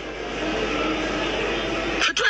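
Steady rushing noise of a moving vehicle heard from inside it, swelling slightly.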